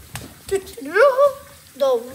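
Mostly a child's voice: a drawn-out vocal sound that rises in pitch and then holds, and a word begins near the end. A couple of light clicks come before it.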